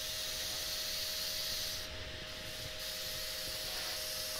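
Airbrush hissing steadily as it sprays black colour onto the rim of a sycamore bowl spinning fast on a lathe, with a steady hum from the running lathe underneath.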